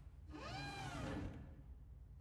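Servo whir of the Iron Man Mark 42 armour's helmet turning: a mechanical whine that rises and then falls in pitch over about a second.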